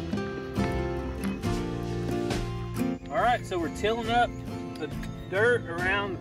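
Background music: steady sustained chords, with a singing voice coming in about three seconds in.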